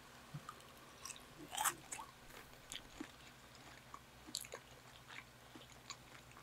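Close-miked chewing and biting of a person eating: a string of short, crisp clicks and smacks, the loudest about one and a half seconds in, over the steady hum of an electric fan.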